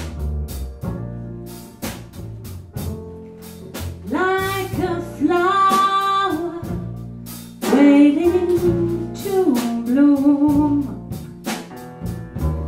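Small live jazz band: a woman singing with piano, upright double bass and drum kit. The band plays from the start and the voice comes in about four seconds in, holding long notes over steady drum and cymbal strokes.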